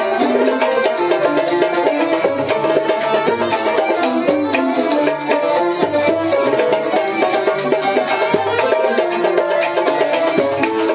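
Instrumental playing by two banjos and a pear-bodied lute, plucking a quick melody together in the Algerian chaabi style.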